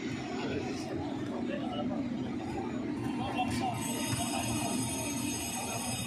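Indistinct chatter of spectators courtside, a steady low murmur of voices with no clear words. About two-thirds of the way through, a faint high-pitched steady whine joins in.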